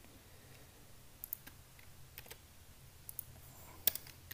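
A few scattered keystrokes on a computer keyboard, in small clusters about a second apart, the last one the loudest, over a faint steady low hum.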